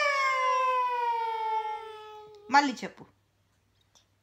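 A toddler's voice holding one long, high sung note that slides slowly down in pitch for about two and a half seconds, then a short rising-and-falling vocal sound.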